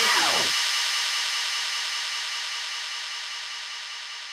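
The end of a DJ mix on CDJ-3000 decks and a DJM-A9 mixer. The last sound drops in pitch over about half a second and leaves a steady hissing noise tail that fades out slowly.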